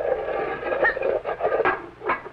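Cartoon sound effect of a metal hatch being swung shut and latched: a rattling, scraping noise, then a few sharp clicks in the second half.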